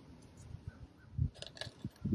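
A few faint, light clicks and clinks of small metal injector leak-off line retaining clips being handled and set aside, with a soft bump or two of handling.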